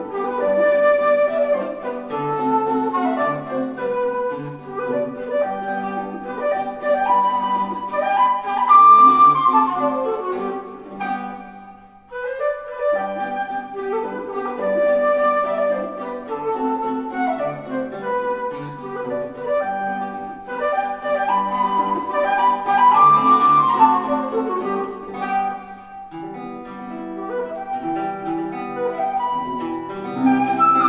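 Duet for six-key wooden flute and romantic guitar playing an Alla Polacca movement: the flute carries the melody over plucked guitar accompaniment. The music breaks off briefly about twelve seconds in, then resumes.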